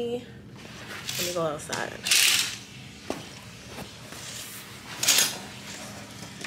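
A woman's brief vocal sound about a second in, then two loud rustling bursts about two and five seconds in, as of a phone being handled close to its microphone.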